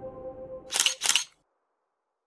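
Camera shutter firing twice, two quick sharp clicks about a third of a second apart, over the fading last notes of soft background music.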